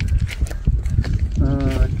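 Wind buffeting the microphone outdoors, an uneven low rumble throughout, with a man's voice briefly in the second half.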